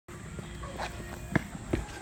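Footsteps on a grassy dirt path: a few uneven thuds, the loudest about one and a half seconds in.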